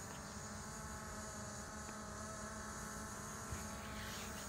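DJI Mavic Pro quadcopter's propellers giving a faint, steady buzz as it circles in the air.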